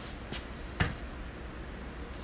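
A single sharp knock about a second in, with a fainter tick just before it, over a steady low hum of room noise.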